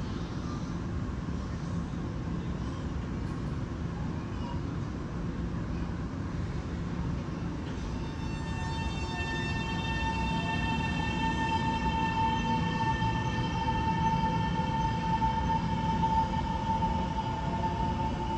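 TRA EMU700 electric multiple unit pulling out of an underground station: a steady low rumble of the train rolling, joined about eight seconds in by a high electric whine from its traction equipment, one tone with several overtones. The sound grows louder as the train gathers speed.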